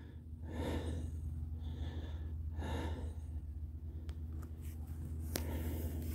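Soft puffs of air against the microphone, several in the first few seconds, over a steady low hum.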